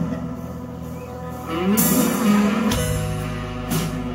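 Live band playing an instrumental passage of a rock ballad, with guitar, bass and drums and no singing. A loud crash comes a little under two seconds in, the bass fills in later, and another crash comes near the end.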